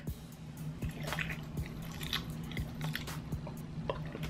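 A person biting and chewing a mouthful of Pepsi gelatin jelly, with small wet squishing and clicking sounds, over soft background music.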